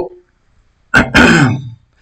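A man clears his throat with one short cough about a second in.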